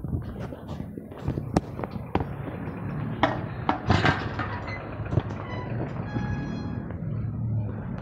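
A run of sharp knocks and clicks over a low steady hum, with a brief steady high tone about six seconds in.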